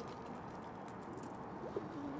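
Birds calling faintly in the background, with one short low call near the end that drops in pitch and then holds, like a dove's coo.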